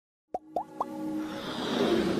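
Logo-intro sound effects: three quick pops, each gliding up in pitch, about a quarter second apart, then a building whoosh that swells in loudness.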